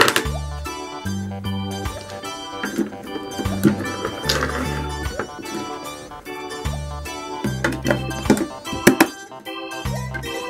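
Background music on a keyboard-like instrument with a repeating bass line, and a few sharp knocks over it.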